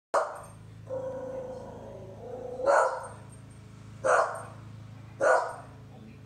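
A dog barking four times, single sharp barks a second or more apart, over a steady low hum. It is alert barking at a person outside: the lawn worker in the yard.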